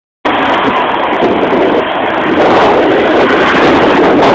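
Loud, steady rushing of passing road traffic and wind on the microphone, heard from a moving bicycle, cutting in just after the start.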